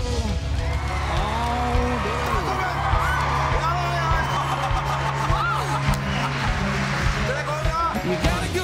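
Live band music with a steady bass line, with people cheering and shouting over it.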